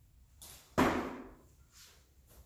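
A single sharp whoosh during a squat snatch with a PVC pipe, starting suddenly about a second in and fading over about half a second.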